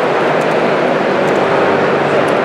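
Loud, steady background noise of an exhibition hall, an even hiss-like din with no single event standing out.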